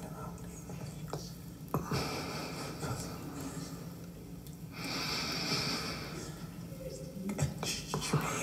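Vinyl record playing an experimental tape collage of human body sounds: breaths, gasps and mouth noises, with a steady breathy hiss about five seconds in and a few short knocks.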